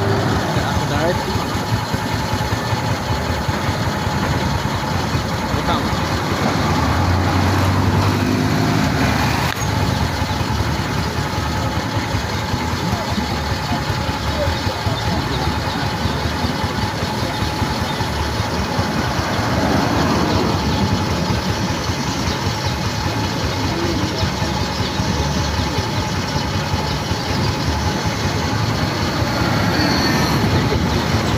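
Busy roadside traffic noise: minibuses and cars driving past, with people's voices in the background. One engine is louder about eight seconds in.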